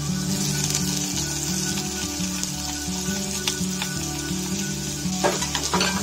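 Blanched fish maw sizzling in hot oil with ginger slices in a small saucepan as it is stir-fried, with a few sharp clicks of chopsticks against the pan near the end. Background music with a low, stepping bass line underneath.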